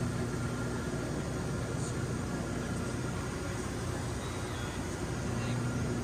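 Steady drone of a Cessna 425 Conquest I twin turboprop in flight, heard from inside the cabin, with an even rushing noise under a low, steady hum.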